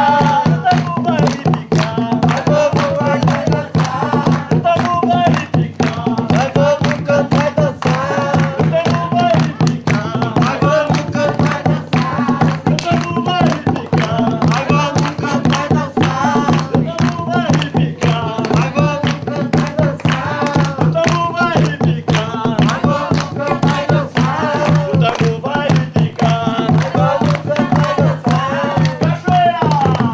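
Jongo music: voices singing a wavering line together over continuous, fast hand drumming on the jongo drums.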